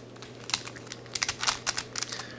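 Plastic layers of a 5-layer hexagonal dipyramid twisty puzzle, a modded 5x5x5 supercube, clicking as they are turned by hand: a quick, irregular run of small clicks.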